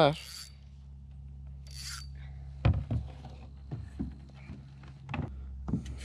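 Handling noise on a plastic kayak after landing a bass: rubbing and scraping with a few sharp knocks spaced unevenly through the middle, over a steady low hum.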